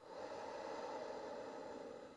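A person's long, steady exhale through the mouth, lasting about two seconds and fading out at the end.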